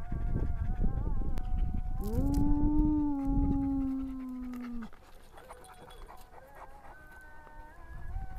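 A large black wolf-like dog howling: one long howl starts about two seconds in, rises at first, holds steady for nearly three seconds and then tapers off. A fainter, higher-pitched call sets in near the end.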